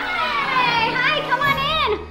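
Excited, high-pitched voices calling out drawn-out greetings, their pitch swooping up and down.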